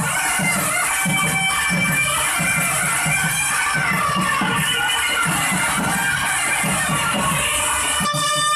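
Thavil barrel drums played in a steady rhythm of stick and hand strokes, with a nadaswaram's reedy, wavering melody carried over them.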